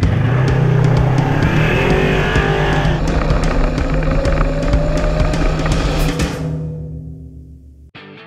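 Polaris RZR side-by-side's engine running as it drives along a dirt road, the engine note rising about halfway through, with drum-backed music mixed over it. It all fades out near the end.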